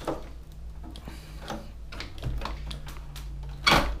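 The metal internal chassis of an iMac G3 Rev. A sliding out of its plastic case, with scattered scrapes and clicks and a loud knock near the end.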